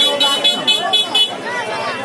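Rapid high-pitched tooting, about six short notes a second, that stops about a second and a half in, amid men's voices and street chatter.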